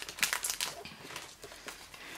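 Clear plastic film crinkling as hands handle a cardboard iPhone box: a run of short, irregular crackles and taps.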